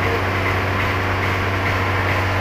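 Steady low mechanical hum with a constant deep drone underneath, unchanging throughout.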